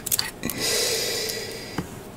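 A few small clicks of plastic model-kit parts being handled, then a long breath out, a sigh-like exhale lasting just over a second, and another small click near the end.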